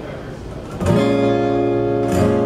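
Acoustic guitar strummed about a second in, a full chord left ringing steadily.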